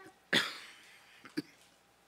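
A man coughs into his hand: one loud, harsh cough about a third of a second in, then a shorter, fainter one about a second later.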